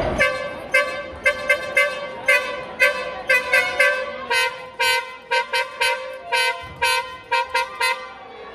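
A handheld horn blown by a spectator in a quick rhythmic series of about twenty short toots, all on much the same pitch.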